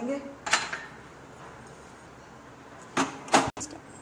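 A few brief handling knocks: one about half a second in and two close together about three seconds in, over a quiet background hiss.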